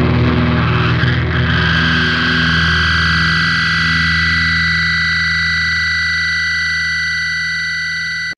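Music: a heavy band track ending on a sustained, effects-laden distorted guitar chord over a held low note, ringing steadily and slowly fading.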